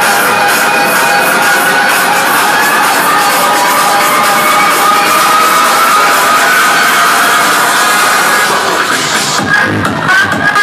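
Loud electronic dance music with crowd noise: sustained synth chords with no bass beat, until the thumping beat comes back near the end.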